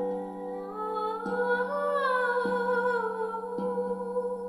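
A woman humming a wordless melody that rises and then falls, over a tuned steel drum struck with mallets about every second and a bit. The drum notes ring on between strikes.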